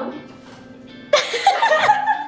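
Girls laughing in a loud burst that starts about a second in, after a quiet moment, with background music underneath.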